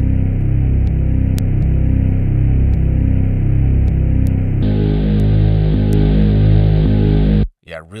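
A bass line played back through a compressor plugin, with steady repeating low notes. About four and a half seconds in, a saturator is switched in and the bass turns brighter and fuller, with more upper harmonics. Playback stops shortly before the end.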